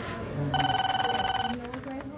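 A steady electronic beep lasting about a second, set among brief voice sounds, in a short outro sound-logo.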